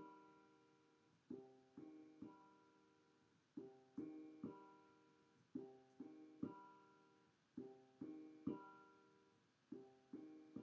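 Quiet keyboard notes played one after another in groups of three, about four groups spaced roughly two seconds apart, as a player tries to form a C major chord on a MIDI keyboard.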